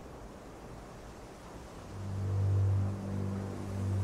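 A faint, even hiss. About halfway through, a low sustained drone swells in: the opening of a music interlude.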